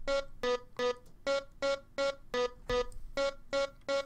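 Sampled sung vocal played through Ableton's Simpler sampler as a run of short, clipped notes, about three a second, moving between two nearby pitches. It doubles the top notes of a synth melody to give it a human edge.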